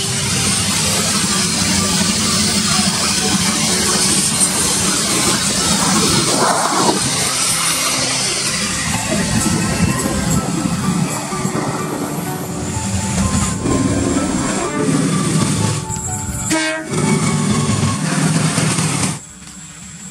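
Passenger train's coaches rolling away along curved track, a steady rumble of wheels on rail. The sound drops away sharply near the end.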